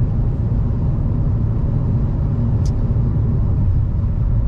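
Steady low rumble of road and engine noise inside a car cabin at highway speed, with a brief faint click a little past halfway.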